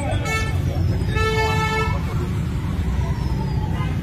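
Steady low rumble of road traffic, with a vehicle horn sounding once, briefly, about a second in.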